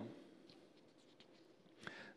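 Near silence: quiet room tone in a pause between spoken phrases, with a faint click near the end.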